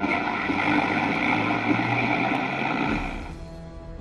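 Radio tuning static: a steady hiss with a few whistling tones as the dial is turned, fading out about three seconds in, with background music underneath.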